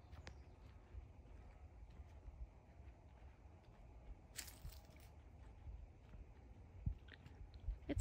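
Faint footsteps crunching on dry fallen leaves along a woodland dirt trail, with a brief louder crunch about four and a half seconds in.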